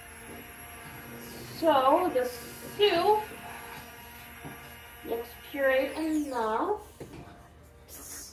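Immersion blender motor running steadily as it purees potato soup in the pot, with a thin whine that slides down and stops about seven seconds in. A woman's voice sounds briefly three times over the motor.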